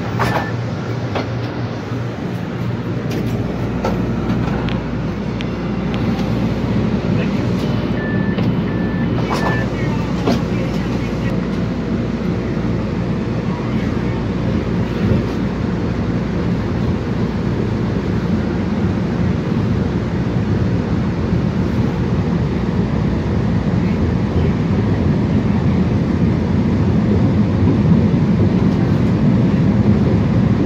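MBTA Green Line light-rail car heard from inside: three short beeps about eight seconds in, then the train pulls away and runs through the subway tunnel, its rumble growing steadily louder.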